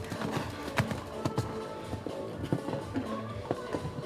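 A show-jumping horse cantering on a sand arena, its hoofbeats landing as irregular dull thuds, with music in the background.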